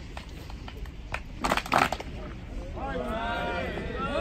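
A person's voice speaking loudly to a group from about three quarters of the way in, preceded by a cluster of sharp clicks about a second and a half in, over a steady low outdoor rumble.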